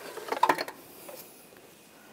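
A short burst of metallic clicks and clinks about half a second in, from a ratchet and slotted O2 sensor socket as the removed upstream oxygen sensor is lifted out in it.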